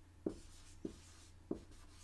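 Dry-erase marker writing on a whiteboard: three short, faint strokes about half a second apart.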